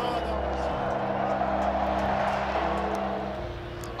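A sustained low music score with a stadium crowd's roar that swells in the middle and fades near the end.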